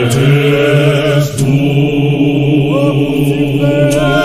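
Zionist church choir singing a hymn in long, held, chant-like chords, with a short break a little over a second in before the voices sustain again.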